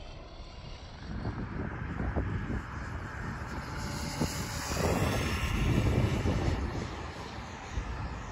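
Small battery-electric RC car running on asphalt: a continuous motor and tyre noise that swells about a second in and is loudest around five to six seconds in.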